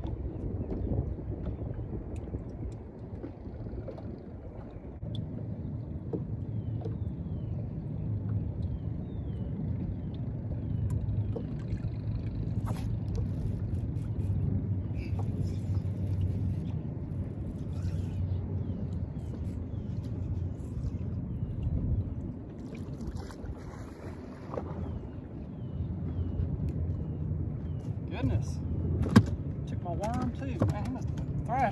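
Steady low rumble of wind and boat noise while a bass is fought and reeled in, with a sharp knock near the end as the fish comes aboard.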